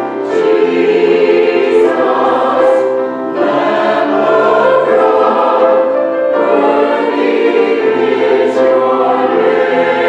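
Mixed choir of men and women singing a slow sacred choral piece, holding chords in phrases of about three seconds with short breaks between them.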